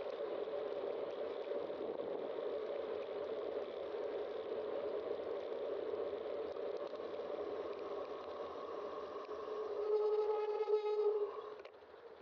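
Steady rushing noise of a bicycle riding along asphalt with wind on the helmet-cam microphone. About ten seconds in, a brief pitched squeal with overtones as the bicycle brakes for a red light, then the riding noise falls away as the bike slows nearly to a stop.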